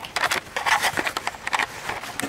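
Packaging being handled: a run of crackling, rustling clicks and scrapes.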